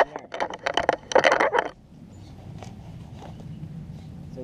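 Leather latigo strap of a western saddle being handled and pulled through the cinch's metal D-ring, a close run of scraping and clinking for just under two seconds while the cinch is tied. After that only a faint steady low hum remains.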